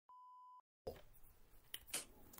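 Censor bleep: a single steady beep of about half a second covering the word after 'notorious', set in dead digital silence, followed by faint background hiss.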